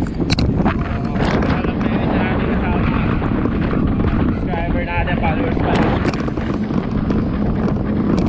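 Wind rushing over an action camera's microphone while riding a road bike at speed: a steady low rumble throughout. Brief, muffled snatches of a man's voice come through the wind a few times.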